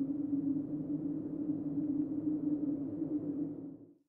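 Low, steady droning tone on one pitch with a rumbling undertone, a sound-effect stinger laid under a title card; it fades out shortly before the end.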